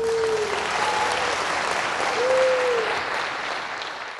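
Audience applauding as the jazz piece ends, with two long shouts of approval rising over the clapping, one at the start and one about two seconds in. The applause slowly dies down toward the end.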